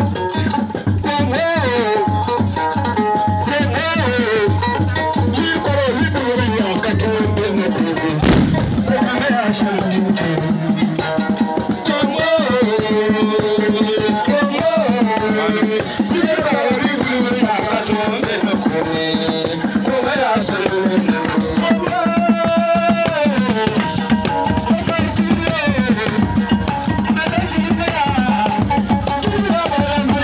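Live amplified traditional music: a voice sings in long gliding phrases over steady hand-drumming on calabash drums. A low pulse beneath it stops about eight seconds in.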